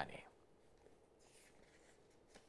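Near silence: a man's narration trails off at the very start, then only faint room tone.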